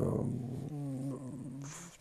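A man's drawn-out, low hesitation sound, a held 'ehh', sustained for nearly two seconds mid-sentence and fading near the end.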